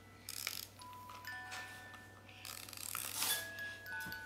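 A music box in a plush toy giraffe plays a slow tinkling tune, one held note after another, with rustling from the plush being handled.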